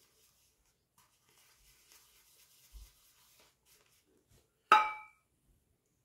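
Shaving brush being worked in the soap, a faint rubbing and rustling, then a single sharp clink with a brief ring about three quarters through, a hard object knocking against the soap container.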